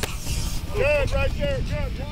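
Practice-field sound: a voice shouting a quick run of about five short calls about a second in, over a steady low rumble.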